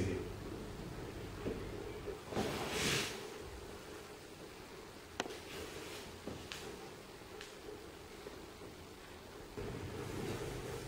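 Quiet room tone with a soft rustle a couple of seconds in, then a sharp click about five seconds in and a few fainter clicks, like small handling noises.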